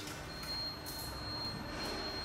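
Metro train running at the station, with a steady high-pitched whine that begins just after the start.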